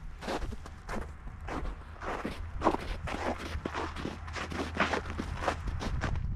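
Hikers' footsteps on a snow-covered trail, several steps a second, irregular, over a low steady rumble.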